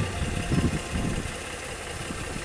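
Engine of a shed-moving mule running steadily at low speed with a low rumble, as it moves a 14 by 60 foot shed.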